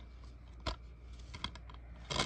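A plastic DVD case being handled and turned over in the hand, with one sharp click about two-thirds of a second in and a couple of fainter clicks later.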